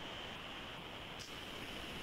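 Faint steady hiss of background noise on a video-call audio line, with no speech.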